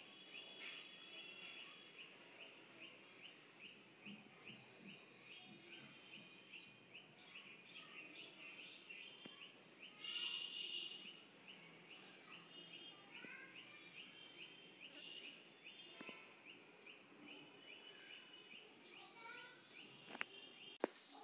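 Near silence, with faint bird chirping: short chirps repeating several times a second throughout, and one louder call about ten seconds in.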